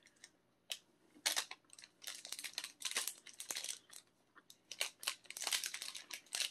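Plastic protein-bar wrapper crinkling in many short, scattered crackles as it is handled, fairly quiet, with soft chewing of the bar.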